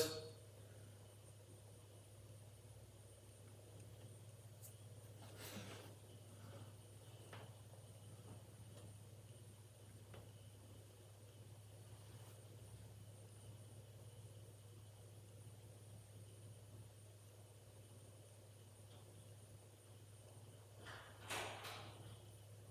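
Near silence: room tone with a steady low hum, and a couple of faint brief rustles, one about five seconds in and one near the end.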